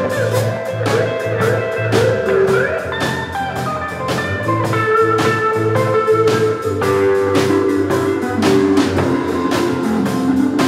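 A live band playing a song: guitar over bass notes and a drum kit keeping a steady beat.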